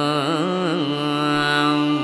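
Carnatic concert music: a melodic line with quick wavering gamaka ornaments for most of the first second, then one note held steadily until it breaks off at the end.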